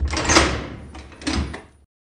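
Automatic sliding door opening: a rumbling slide that starts abruptly, swells again partway through and stops just before two seconds.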